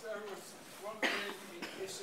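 A single cough about a second in, over faint, distant voices in the room.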